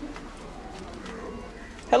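Faint, low bird cooing.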